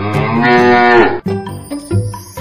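A Holstein dairy cow moos once, a long call of just over a second whose pitch drops at the end. Light background music plays under it and carries on afterwards.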